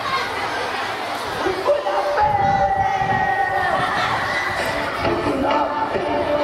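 A crowd of children's voices shouting and cheering together, with a few long held calls about two seconds in.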